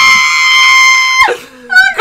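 A woman's high-pitched scream, one long held note that stops abruptly just over a second in, followed by a short laugh near the end.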